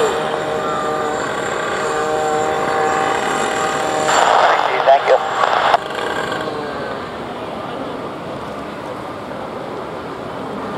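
A motor running with a steady, even hum that fades down after about six seconds. A short burst of voices cuts in about four seconds in.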